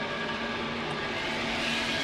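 A steady rushing noise with a faint low hum, standing in for a vehicle travelling through a tunnel, heard alone in a break in the music.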